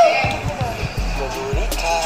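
A woman's voice over background music, with a few low thuds in the first second and a steady low hum from about a second in.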